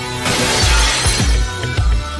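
Glass shattering in a burst that starts a quarter second in and fades within about a second, as a masked intruder swings a club through a house. Under it, trailer music with heavy bass beats.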